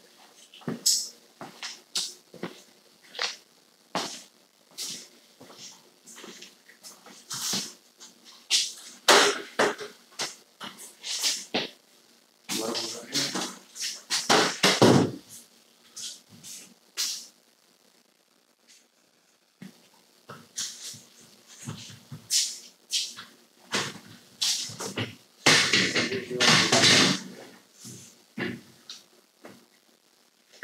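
Scattered knocks, clicks and clatter of people moving about and handling a stepladder and a four-foot level, with a few bursts of indistinct voices.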